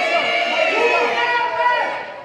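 Arena crowd shouting back an answer, many voices at once, fading near the end.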